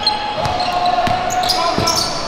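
A basketball dribbled on a hardwood gym floor, with sneakers squeaking and a player's long call, all echoing in the gym.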